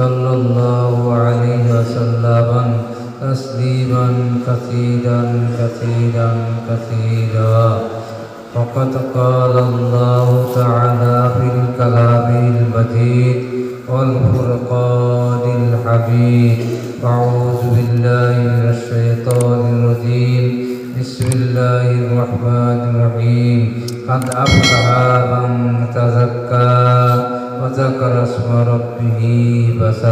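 A man's voice chanting Arabic in a drawn-out melodic recitation, typical of Quran recitation (tilawat), heard through a microphone. The long held notes break off briefly for breaths a few times.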